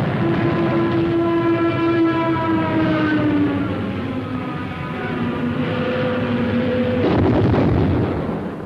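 Air-attack battle sound: a sustained whine that slowly drops in pitch over steady rumbling, then a second lower drone, and a loud blast about seven seconds in as a bomb bursts in the sea.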